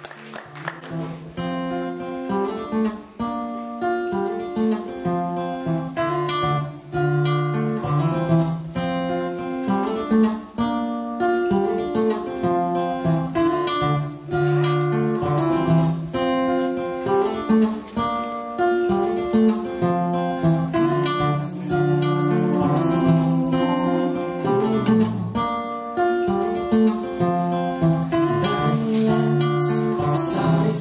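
Acoustic guitar playing a repeating chord pattern, the instrumental intro of a song before any singing, coming in about a second in.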